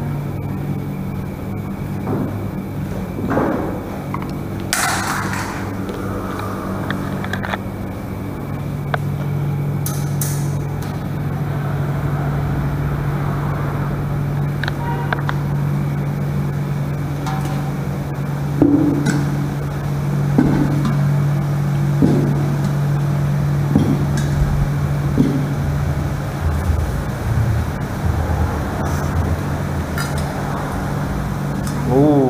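Stainless steel chafing-dish lids and food covers being lifted and set down on a buffet table, giving scattered short clinks and knocks over a steady low hum.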